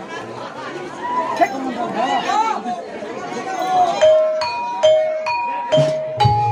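Gamelan saron metallophones struck with mallets, starting about four seconds in. Single ringing notes come about two a second, alternating between two pitches, under voices chattering.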